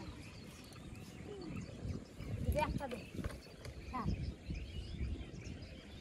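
Short bits of a woman's voice, about two and a half and four seconds in, over a low, uneven rumble, with a few faint bird chirps.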